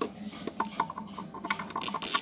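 Irregular small mechanical clicks and ticks, several a second, some with a short metallic ring, from hand work on a car stereo's chassis. A louder rasping burst comes near the end.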